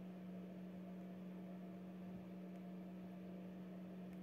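A faint, steady low hum with a light hiss underneath, unchanging throughout.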